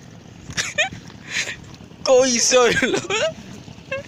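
Loud human laughter, a voice wavering quickly in pitch, from about two seconds in, with breathy gasps before it.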